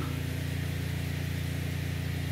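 A steady low background hum with a faint hiss above it, unchanging and without distinct events.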